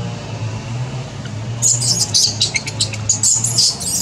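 Infant long-tailed macaque crying in rapid, high-pitched squeals that begin about a second and a half in.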